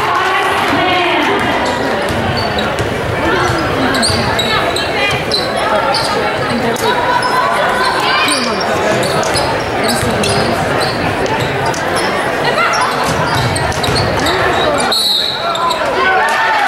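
Basketball game sounds in a large gym: a basketball bouncing on the hardwood, sneakers squeaking, and the voices of players and spectators calling out, with a short high whistle blast near the end.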